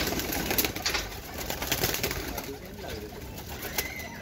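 Dab wali domestic pigeons cooing in a loft, with sharp clicks and scuffles from the birds moving about, busiest in the first second.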